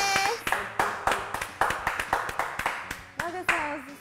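Two people clapping their hands: a quick, uneven run of claps lasting about three seconds.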